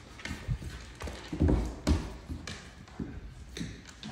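Paws of two Great Dane puppies thudding and tapping on a hardwood floor as they tussle over a tug toy, in irregular steps and knocks.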